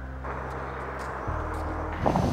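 Low, sustained background music whose notes change once, a little past a second in, under a steady rushing noise that begins just after the start.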